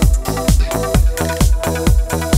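Electronic dance music played loud by a DJ over a party sound system, with a steady heavy bass-drum beat about twice a second.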